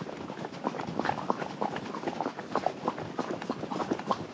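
Horse's hooves striking a gravel dirt road, a quick, uneven run of clops and crunches several times a second.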